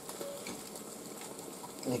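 Egg omelette frying in a pan: a faint, steady sizzle, with a few light clicks of the spatula working under the egg.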